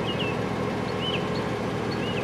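Steady outdoor background hum with a few short, high bird chirps.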